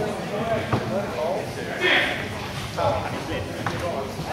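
Indistinct voices echoing in a sports hall, with a few sharp knocks.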